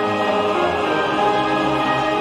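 Mixed choir singing with orchestra and brass accompaniment, holding sustained chords.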